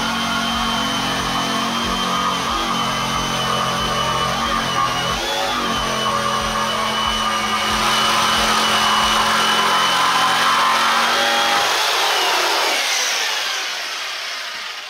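Electric jigsaw cutting through a desk top board, its motor running with a steady whine as the blade saws. About twelve seconds in the saw is switched off and the motor winds down with a falling whine.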